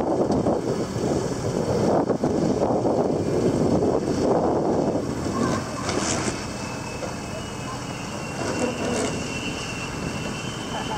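Wind buffeting the microphone and water rushing along a sailboat's hull, loudest in the first half. From about seven seconds in, a steady high whine joins it: the hydrofoils of a SailGP F50 foiling catamaran passing close by at speed.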